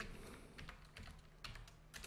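Faint keystrokes on a computer keyboard, a short run of irregular clicks as a file name is typed.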